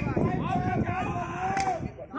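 Voices of players and spectators talking across the ground, with one sharp knock of a cricket bat striking a tennis ball about a second and a half in.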